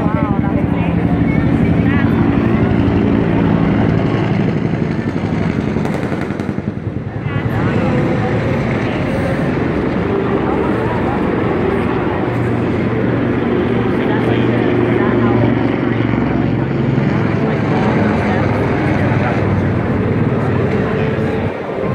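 Loud, steady drone of heavy military engines running, with crowd voices mixed in.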